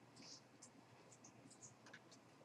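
Near silence: room tone with a few faint, short, high-pitched scratches and ticks.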